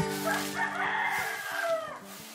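A rooster crowing once: one long call that falls in pitch at the end.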